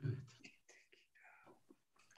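A man's voice, soft and close to a whisper, trailing off about half a second in; only faint murmurs follow.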